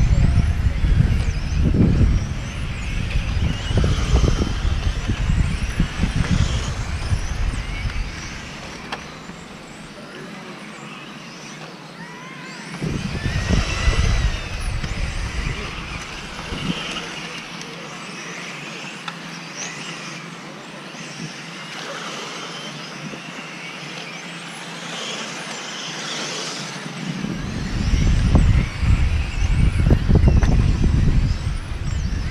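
Electric RC touring cars' motors whining as they lap the track, the pitch rising and falling as they speed up, brake and pass. A heavy low rumble covers the first eight seconds and returns near the end.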